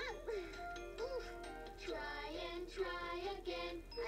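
A children's song: voices singing a bright melody in phrases over a light instrumental backing.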